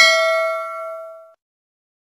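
Notification-bell 'ding' sound effect: a single struck bell ringing out with several clear tones and dying away about a second and a half in.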